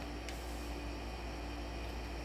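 Steady low hum and hiss of room noise, with one faint tick about a quarter second in.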